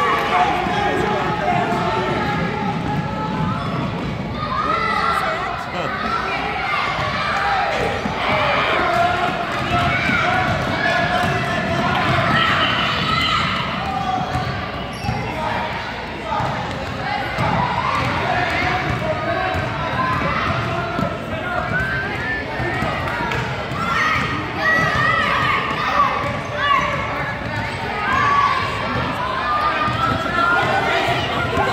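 Basketball bouncing on a hardwood gym floor during a game, with many voices calling out and chattering in a large hall.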